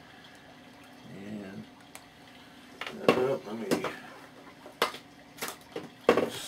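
Several sharp clicks and taps of plastic epoxy bottles being handled on a workbench, mostly in the second half.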